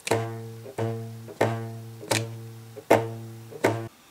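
A slack rubber band stretched over a tissue-box instrument, plucked about six times at an even pace, roughly one pluck every 0.7 s. Each pluck is the same low twanging note that fades away before the next. The note is low because the band has little tension on it.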